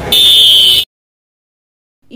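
A loud electronic buzzer tone held steady for under a second, cutting off abruptly into dead silence.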